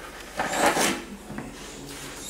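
Notched trowel scraping through tile mastic: one short scrape about half a second in, then a faint click.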